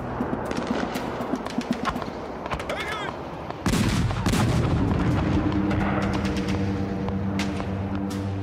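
Rapid crackling gunfire, then about three and a half seconds in a heavy artillery gun fires with a loud boom and a long rumble. Music with sustained low notes runs underneath.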